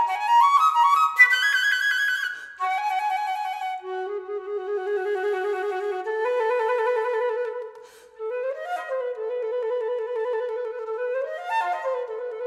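Silver concert flute playing solo: a fast rising run of notes into a breathy high note, then long low notes held with vibrato, twice approached by a quick upward flourish.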